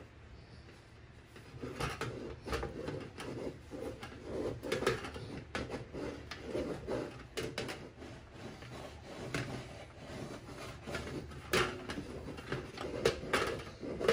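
Handling noise from a brass French horn: hands gripping and rubbing its tubing and bell, with irregular small knocks, clicks and rustles, the loudest knock a little past the middle.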